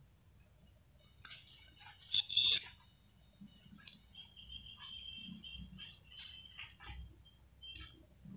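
Faint bird calls in the background: a louder high call about two seconds in, then a string of short high chirps.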